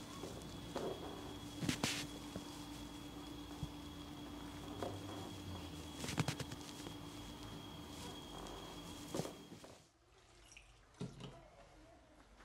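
Hands massaging a man's head and neck, with faint handling sounds and three sharp clicks over a steady electrical hum. The hum stops abruptly about ten seconds in.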